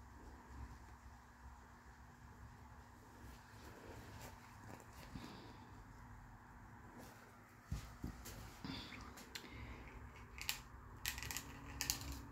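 Faint steady low hum, then from about two-thirds of the way in a few light clicks and taps as coloured pencils are handled and set down on the table.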